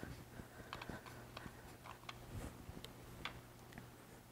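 Faint, irregular small clicks and rubbing as a rubber strap is wrapped around a wooden longbow limb, over a low steady hum.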